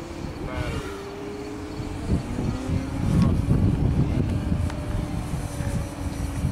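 Model airplane's motor and propeller running in flight: a steady drone that drops in pitch near the start, with a low rumble under it midway.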